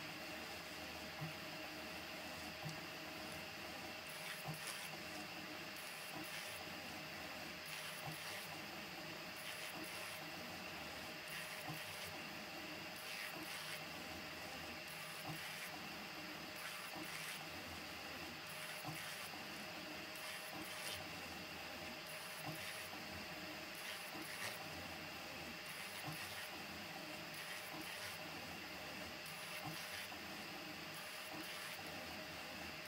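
Pellet-extruder 3D printer built on a Prusa MK4 running a print: a steady whir of fans and motors, with brief high-pitched stepper-motor whines coming and going as the print head moves, and light clicks.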